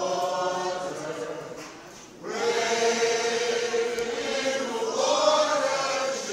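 A group of voices singing slow, long-held notes together, fading briefly about two seconds in and then coming back louder and fuller.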